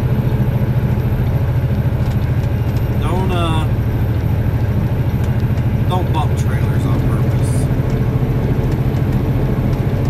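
Heavy truck's diesel engine running at a steady cruise, heard from inside the cab as a constant low drone. A voice murmurs briefly twice, a few seconds in and about halfway through.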